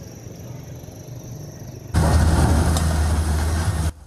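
Faint street background, then about two seconds in a sudden switch to the loud, steady running of a Komatsu PC210 hydraulic excavator's diesel engine: a deep low drone with a rough noise over it.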